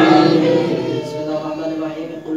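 A congregation's many voices in unison, ending about a third of a second in, then a single man's voice carrying on in slow, melodic chanted prayer recitation.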